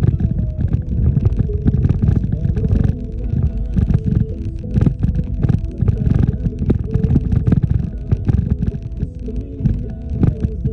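Vehicle cabin noise while driving slowly on a rough dirt road: a steady low rumble broken by frequent jolts and knocks from the bumps.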